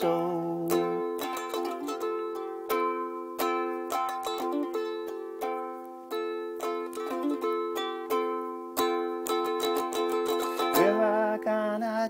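Solo ukulele strumming chords in a steady rhythm, an instrumental passage with no singing until a man's voice comes back in near the end.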